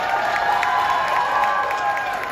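Concert audience cheering and applauding, a steady wash of claps and held cheers.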